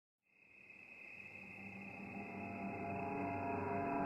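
An eerie soundtrack bed fades in from silence: a steady cricket-like chirring over a low drone of several held tones, slowly growing louder.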